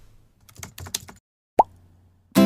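Animation sound effects: a quick run of keyboard-typing clicks, then a single short pop that falls in pitch near the end.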